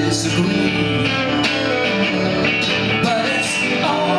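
Live rock band playing, with electric and acoustic guitars.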